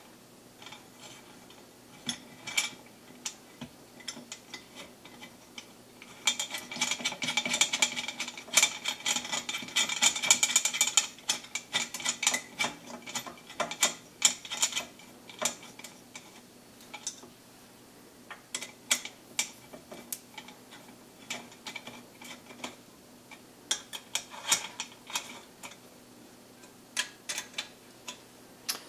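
Hex key turning screws into the aluminium extrusion frame of an Anycubic Mega Zero 3D printer, giving scattered small metal clicks and scrapes. A denser rasping stretch begins about six seconds in and lasts about five seconds. The screws are only being snugged, not yet fully tightened.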